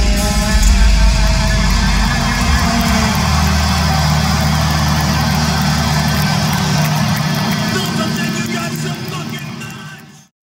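Live heavy metal band in an arena holding a sustained low guitar chord that rings on over a wash of noise. The sound fades over the last two seconds and then stops.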